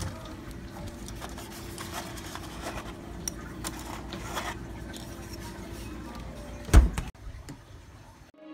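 A refrigerator runs with its door open, giving a steady low hum with a faint tone and small clicks and knocks as eggs are taken from the door's egg tray. Near the end a single heavy thump, the door shutting, cuts the hum off, followed by a few light clicks.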